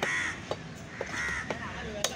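A steel cleaver chops fish on a wooden stump block, four sharp knocks about two a second. Three harsh caws sound over and between the chops.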